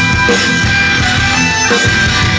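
A live pagan folk-metal band playing loud: distorted electric guitars over fast drums, with a short shouted vocal near the start.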